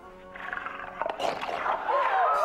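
Cartoon lion roaring, getting louder in the second half, over background music.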